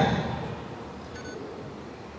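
A pause in speech: low, steady background noise, with a faint short electronic beep about a second in.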